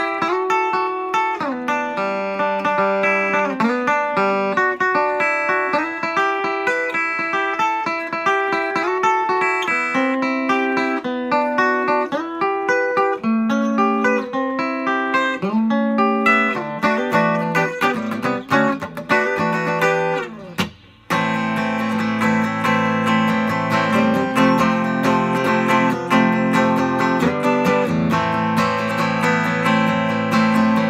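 Fender Custom Shop 1965 reissue Jazzmaster electric guitar played unplugged, its strings heard without an amp: picked single notes and arpeggios for about twenty seconds, a sudden brief break, then fuller strummed chords.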